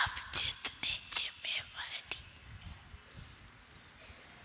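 An elderly woman speaking into microphones in short, breathy phrases for about the first two seconds, then falling silent, leaving faint room tone.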